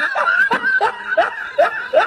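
Rhythmic laughter in short rising "ha" bursts, about two or three a second.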